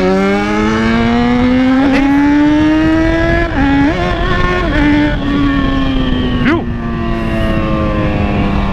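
Yamaha XJ6's 600 cc inline-four engine under way. Its pitch climbs steadily as it accelerates for the first three and a half seconds, dips briefly and recovers, then falls slowly as the throttle eases. Wind rush runs underneath.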